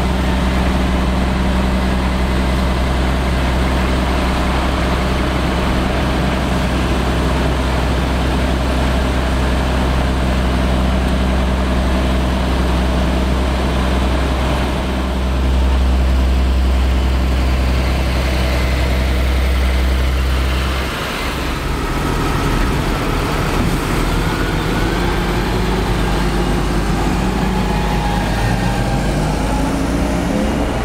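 Heavy tractor diesel engines running steadily, growing louder around the middle as a tractor comes close. After about twenty seconds the low drone drops away, and near the end an engine note rises as a tractor pulls a silage trailer past.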